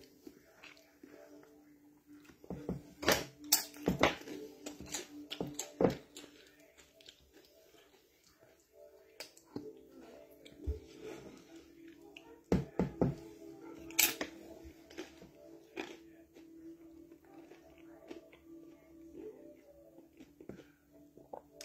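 Eating sounds: scattered clicks and taps as food is scooped through curry in a plastic takeaway tray, with chewing, clustered in two spells near the start and in the middle. A faint steady tone hums underneath.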